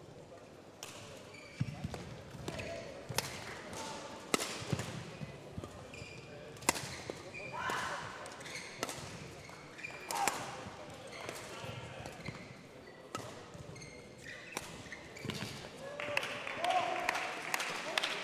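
Badminton rackets striking the shuttlecock during a rally: sharp single hits at irregular intervals, one to three seconds apart. Between the hits come short squeaks of court shoes on the indoor court floor.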